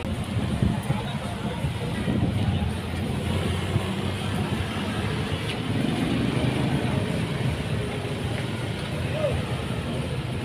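Road traffic passing close by: the engines of a small pickup truck and motorbikes making a steady low rumble, with voices in the background.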